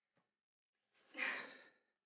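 A person sighing: one breathy exhale a second in, lasting under a second.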